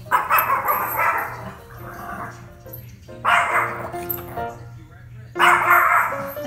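Yorkshire terrier barking excitedly in three bursts of rapid barks, over background music.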